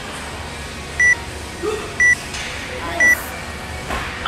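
Three short, high beeps exactly one second apart from a workout interval timer, counting down the final seconds as the workout clock nears 16:00.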